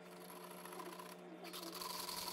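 Small handheld battery-powered mixer, a milk-frother type, running in a jar of liquid with a steady low motor hum. About one and a half seconds in, a louder hissing, churning noise joins as the liquid is whipped.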